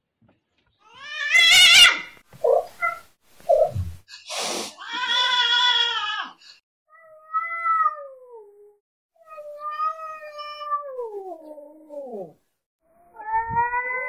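Cat yowling and meowing: a harsh, wavering yowl about a second in, a few short noisy bursts, then a run of long drawn-out meows that slide down in pitch, with another starting near the end.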